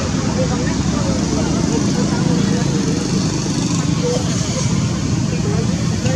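Indistinct voices murmuring over a steady background rumble like distant traffic.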